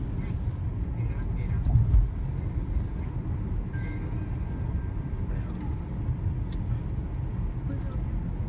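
Car cabin noise while driving: a steady low rumble of engine and tyres on the road, with a brief louder thump about two seconds in.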